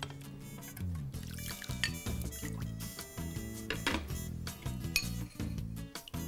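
Background music, with several clinks of a metal utensil against a dish as chicken soup is served.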